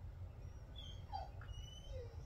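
Several faint, short, high-pitched animal chirps and whistles in quick succession from about half a second in, some sliding down in pitch, over a steady low rumble.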